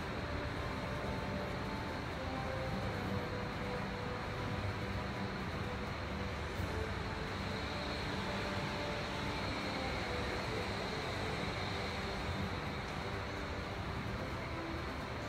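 Steady, even rumbling noise with no distinct events, typical of a large hangar's background hum.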